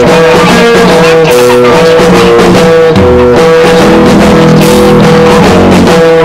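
Instrumental stretch of a lo-fi rock song: electric guitar, bass and drums playing together, with one high note held steadily over shifting chords.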